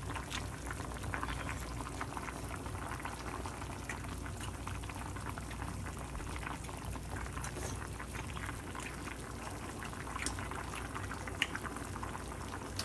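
Macaroni and sausages boiling hard in water in a pan on a gas stove: a steady bubbling, dense with fine popping and crackling.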